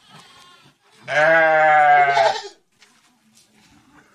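A goat bleating: one loud, long call of about a second and a half, starting about a second in, with a fainter call just before it.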